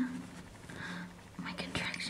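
Whispered speech.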